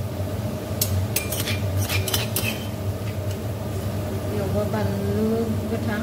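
A steel spoon clinking against metal cookware: a handful of quick, sharp clinks from about one to two and a half seconds in, over a steady low hum.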